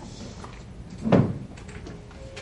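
Library reading-room ambience with a few light clicks and rustles, broken a little past halfway by a single loud dull thud, like something heavy being set down or a door or cupboard closing.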